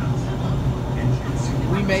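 Steady low rumble and hum of a moving passenger train, heard from inside the carriage.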